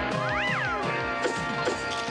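Cartoon background music, with a yowl that rises and falls in pitch about half a second in.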